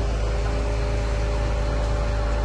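A vehicle engine idling, a steady low hum with a faint even drone over it.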